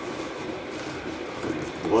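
Hands pulling and working at a cardboard shipping box, a steady rustling and scraping of cardboard.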